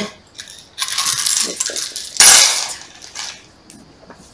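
Small hard divination pieces from a wooden bowl clattering together in a few rattling bursts. The loudest comes a little over two seconds in, followed by a few light clicks.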